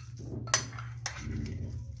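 Metal fork scraping and clinking against a glass baking dish while stirring a mayonnaise salad of shredded cabbage and carrot, with two sharp clinks about half a second and a second in. A steady low hum runs underneath.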